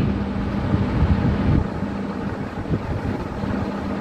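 Low, uneven rumbling background noise under a steady hum, with no voice; the rumble eases a little about one and a half seconds in.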